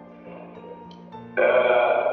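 Background music: a soft low held tone, then a louder passage of sustained notes comes in suddenly about a second and a half in.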